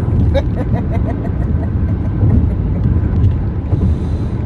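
Steady low road and engine rumble inside a car's cabin at highway speed, with a short soft laugh in the first second or so.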